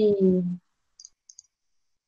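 A woman's drawn-out word trails off, then dead silence broken by two or three faint, short clicks about a second in.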